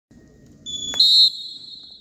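Referee's whistle blown to start a wrestling bout: a shrill high tone that jumps louder and slightly higher with a warble about a second in, then fades away.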